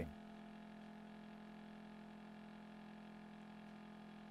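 Near silence: room tone with a faint steady low hum.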